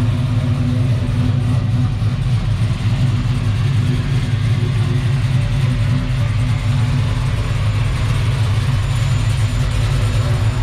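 A 1973 Chevrolet Caprice convertible's engine idling steadily with an even, low rumble.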